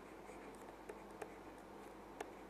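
Faint taps and clicks of a stylus writing on a tablet, a few light ticks spaced irregularly about half a second apart, over a low steady hum.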